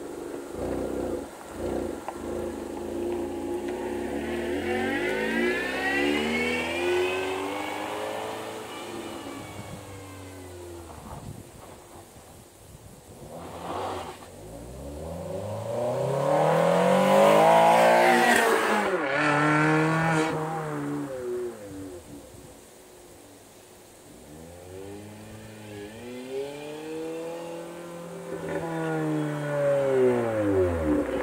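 A small hatchback's engine and exhaust revving as the car drives past several times, its pitch climbing and falling in long sweeps. The loudest pass comes about two-thirds of the way through.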